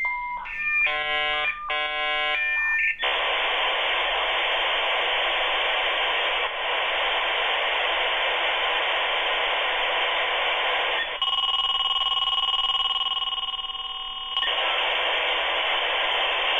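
Dial-up modem handshake heard through a landline telephone: a few seconds of short bursts of chiming tones, then a long rushing hiss, a stretch of several held steady tones about eleven seconds in, and the hiss again. The modem is negotiating a connection to the Juno dial-up service.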